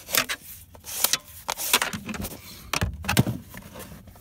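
Handling noise close to the microphone: irregular rustling with scattered clicks and knocks, the loudest about three seconds in.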